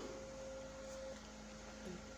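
Faint electrical hum: a thin steady tone that stops about halfway through, over a lower steady mains hum.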